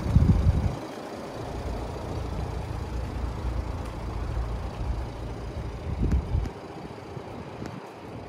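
Wind buffeting the microphone: an irregular low rumble, strongest in a gust right at the start and another about six seconds in, then easing.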